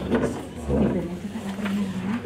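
A person's voice, low and murmured, ending in a drawn-out hum or 'uhh' held on one pitch for about half a second near the end.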